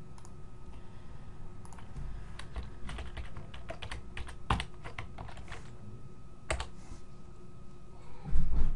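Typing on a computer keyboard: a run of quick keystrokes, thickest in the middle, then one louder click about six and a half seconds in.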